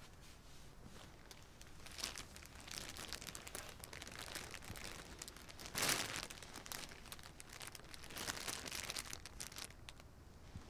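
Crinkly plastic wrapping around a package rustling and crackling as it is handled and pulled open, starting about two seconds in, with its loudest burst around the middle.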